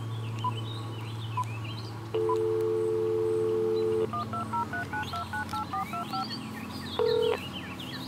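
Cordless DECT phone handset: three short key beeps, then a dial tone for about two seconds, then a quick run of about ten touch-tone (DTMF) digits dialing a number, and a short tone near the end. Birds chirp faintly in the background.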